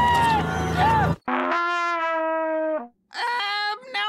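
Busy music cuts off suddenly about a second in. Then a small cartoon horn is blown in one long note, sagging slightly in pitch, followed after a short gap by a shorter wavering note near the end.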